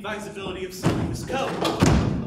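Two heavy thumps on a theatre stage floor, about a second apart, with a voice between them that carries no clear words.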